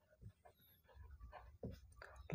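Near silence, with faint scratching of a marker pen writing on paper.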